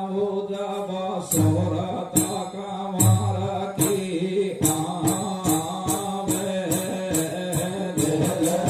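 Rajasthani sudda folk music: a man singing a chant-like vocal line into a microphone over sustained instrumental accompaniment. Sharp percussion strokes join about a second in and come roughly every three-quarters of a second, with a couple of deep drum thumps early on.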